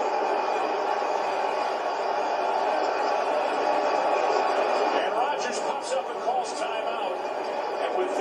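A football game broadcast playing from a TV: a steady stadium crowd din, with commentators' voices faintly over it from about five seconds in.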